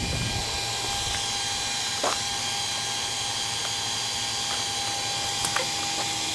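Small electric blower fan on a homemade solar air heater running fast: a steady whir with a constant whine. A faint click about two seconds in.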